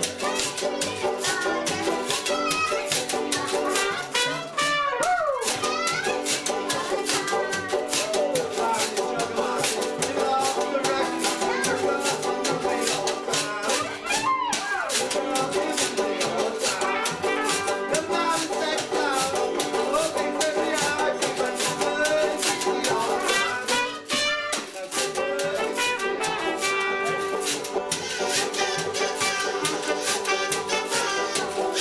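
Live acoustic band playing a song: a banjo strumming with a trumpet playing over it.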